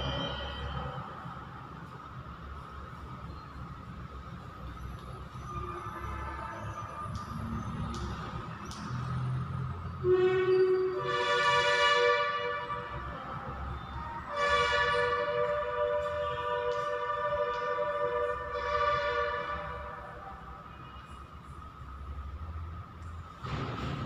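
Distant train horn sounding two held multi-tone blasts: a shorter one about ten seconds in and a longer one lasting about five seconds.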